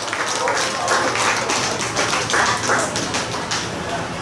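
Small audience applauding: a dense, irregular patter of hand claps.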